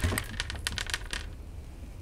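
Dried corn kernels being twisted off the cob by hand, clicking as they snap loose and drop onto a wooden table: a quick run of small clicks in the first second, then thinning out.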